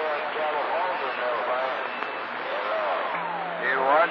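Voices on CB radio channel 28, coming in by long-distance skip through the receiver's speaker over a steady bed of static hiss. The talk runs on with little that can be made out, and some rising, warbling sweeps near the end.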